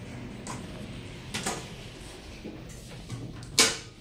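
Sigma elevator car doors closing, with faint clicks and then a loud short thud near the end as they shut.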